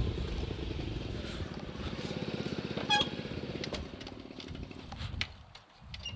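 Small motorbike engine running with a rapid, even firing beat as the bike rides along, then easing off and quietening from about four seconds in as it slows.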